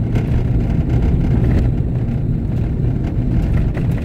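Vehicle driving on a dirt road, heard from inside the cab: a steady low rumble of engine and tyres on the gravel surface.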